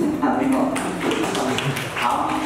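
Several people talking at once, unintelligible, with a few short taps among the voices.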